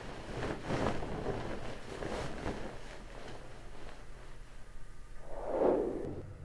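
A cloth bedsheet rustling and swishing as it is pulled down over a person's head: a run of short fabric swishes, then a louder, lower rush of noise near the end.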